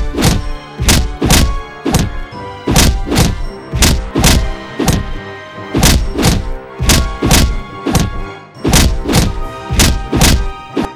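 A run of heavy thuds, roughly two a second and unevenly spaced, as fight sound effects over background music.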